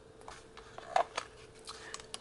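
Faint, scattered clicks and handling noise as radio controls are worked, the strongest about a second in, over a faint steady hum.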